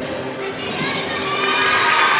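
Arena crowd cheering and shouting, many voices at once, swelling louder about a second and a half in.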